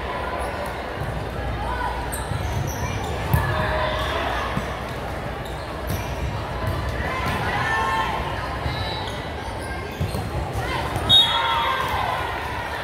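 Volleyball rally in a large gym: sharp smacks of the ball being hit, the loudest near the end, over a steady hum of players' and spectators' voices echoing in the hall.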